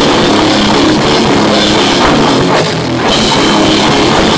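A heavy rock band playing loud and live, with drum kit and distorted guitars filling the room. The level dips briefly near three seconds in.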